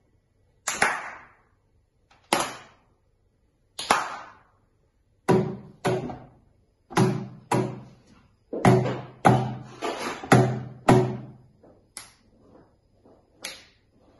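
Hand percussion in a slow rhythm: three single sharp hand strikes, then palms slapping a wooden tabletop in quick pairs, then two fainter finger snaps near the end.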